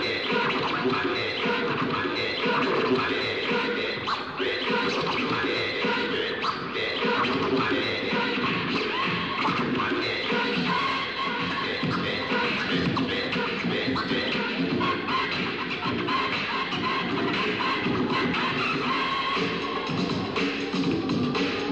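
A DJ scratching and cutting vinyl records on two turntables over music, in a continuous stream of rapid, chopped sounds.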